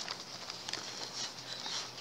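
Quiet outdoor background with a few faint light taps as a glass hurricane chimney is handled.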